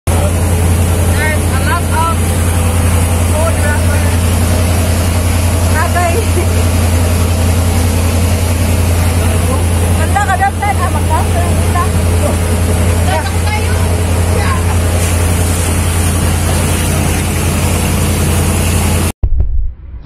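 A boat's engine running steadily while under way, a constant low hum under rushing wind and water, with voices calling out now and then. It all cuts off abruptly about a second before the end.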